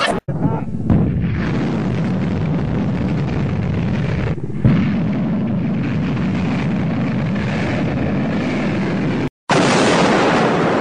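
Rocket motor of a truck-launched ballistic missile firing at liftoff, a continuous dense rushing noise. It cuts out briefly just after the start and again near the end, with a short louder surge about halfway through.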